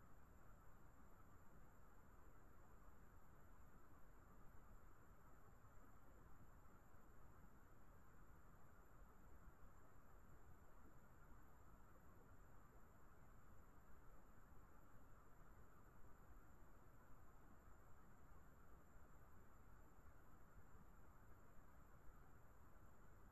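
Near silence: a faint, steady hiss with two faint, high, steady tones and nothing else happening.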